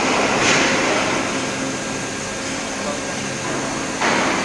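Plastic injection moulding machine running with a steady machine hum and hiss, with a louder rush of hiss about half a second in.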